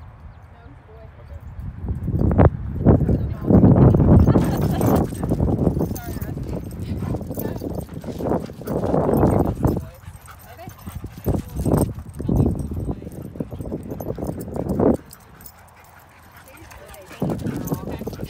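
Dogs barking in bursts as they play, mixed with people's voices.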